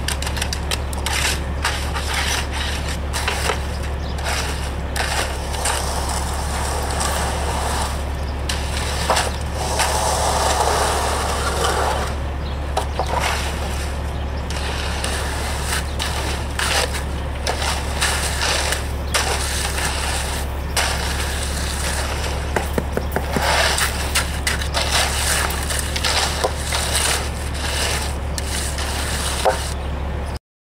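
Rake and hand tools scraping and dragging through wet concrete, with many short scrapes and knocks, over a steady low hum.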